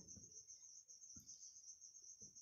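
Near silence with a faint, steady high-pitched trill running underneath.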